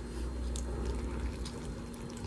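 Faint, steady bubbling of a pan of guajillo chile sauce simmering on the stove, over a low hum.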